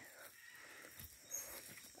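Near silence: faint outdoor ambience with a steady high insect drone, and a brief faint high chirp about two-thirds of the way through.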